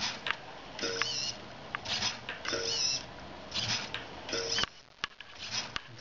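Small hobby servo whirring in short, high, whiny bursts, about one a second, as it swings its arm to tilt the wire track of a spinning gyro wheel toy. The cycle is set to about a one-second delay, at which the wheel keeps running in sync.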